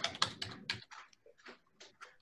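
Computer keyboard typing: a quick, irregular run of key clicks in the first second, thinning to a few scattered clicks after.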